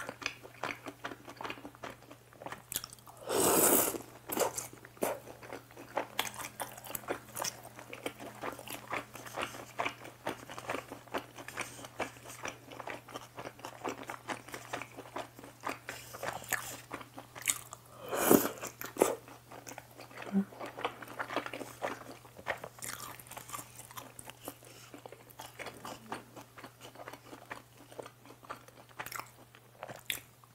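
Close-miked chewing and biting of food eaten from a bowl of jjamppong, a steady run of small wet clicks and crunches. Two louder, longer noises stand out, about three and a half seconds in and again about eighteen seconds in.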